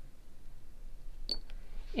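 Quiet room with a single sharp click and a brief high ping a little over a second in, then a fainter click.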